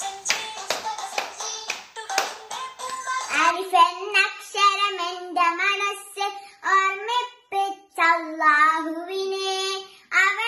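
A few seconds of music with a sharp rhythmic beat, then a young girl singing a song unaccompanied, starting about three seconds in, her voice high and clear with long held notes.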